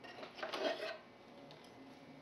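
A hand rummaging in a wooden box, with small objects scraping and knocking against the wood as a tobacco pipe is picked out. The scrape and rattle is brief, lasting about a second.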